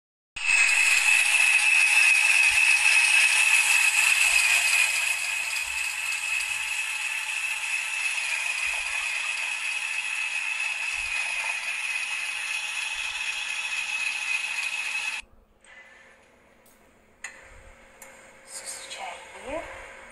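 Handheld electric mixer with a whisk attachment running in a glass, whipping dalgona coffee: a steady whine over a hiss. It gets a little quieter about five seconds in and cuts off suddenly about fifteen seconds in.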